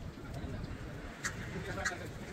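Outdoor street ambience with birds calling over a steady low background rumble, and two short high chirps in the second half.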